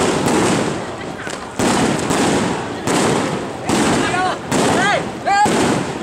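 Strings of firecrackers crackling in repeated bursts, each starting suddenly and fading over about a second, with voices calling out from the crowd near the end.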